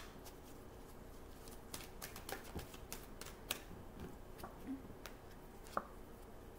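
A deck of oracle cards being shuffled and handled: a run of faint, irregular clicks and snaps of card against card, with one sharper snap near the end.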